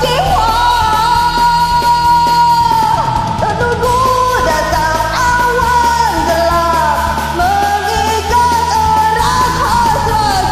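A woman singing a karaoke cover of an Indonesian song over a recorded backing track. She holds one long note for about the first three seconds, then the melody moves on in shorter phrases.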